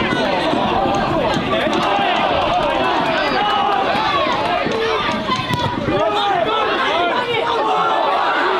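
Many voices shouting and calling over one another at a football match: supporters in the stand and players on the pitch during open play.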